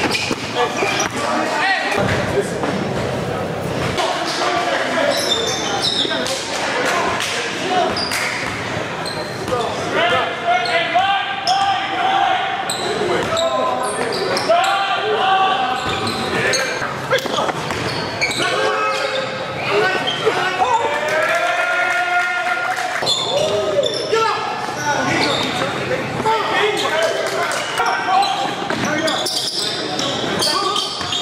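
Basketball bouncing on a hardwood gym court during play, with players' voices calling out, all echoing in a large gym hall.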